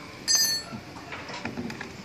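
A single sharp metallic click with a brief high ring about a quarter second in, then faint handling noise. It is the click of the BMW Z3 door handle's brass pull tab being pulled back out to lock the new trim in place.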